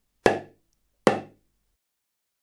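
Small drum struck twice with a mallet, the strikes about 0.8 s apart, each a sharp hit that dies away within about half a second.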